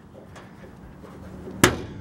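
Hood latch of a 1963 Plymouth Valiant releasing: one sharp clunk about one and a half seconds in, as the hood pops free of its catch.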